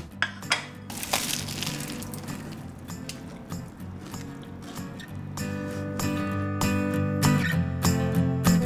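Background music that builds up about five seconds in, with guitar strums. Near the start there are a few light clinks, such as a plate on a counter.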